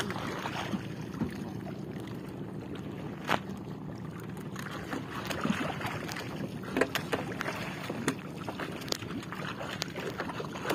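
Sea water lapping and splashing against a small wooden outrigger boat, a steady rush, with a few sharp knocks: one about a third of the way in and more near two-thirds of the way through.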